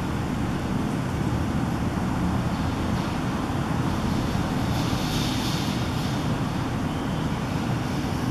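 A steady low rumble of background noise, even throughout with no distinct events.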